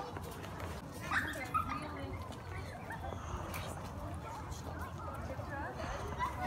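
Indistinct voices of people in the background, with short high yips and whimpers from a dog.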